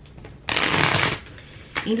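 A deck of oracle cards being shuffled in the hands: one short burst of shuffling, lasting under a second, about half a second in.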